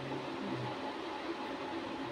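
Steady room noise: an even hiss with a low hum that drops out for about the second half.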